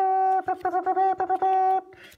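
A trumpet-style fanfare: quick repeated notes and longer held notes, all on one pitch, cutting off near the end.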